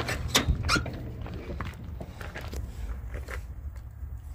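The door of a 1979 Chevy Silverado pickup being opened: a few short clicks and knocks from the latch and door, over a low rumble.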